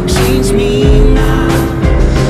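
A car engine accelerating, its pitch rising slowly and steadily, mixed with music that has a steady beat.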